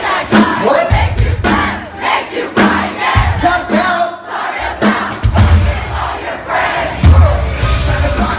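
Live rock band playing with a loud crowd shouting and singing along, heard from inside the audience, with heavy low drum and bass hits coming every second or two.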